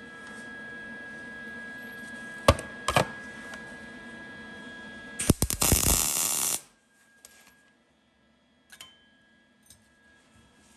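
Two sharp metal clicks, then a MIG welder tack-welding a steel bracket, crackling for about a second and a half from about five seconds in and stopping suddenly.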